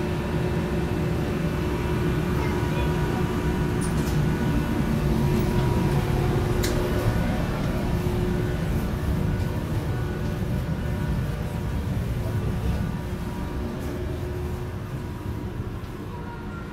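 Steady low rumble and hum of a ventilation or air-conditioning blower in a small steel ship's cabin, with a few light clicks. It eases slightly toward the end.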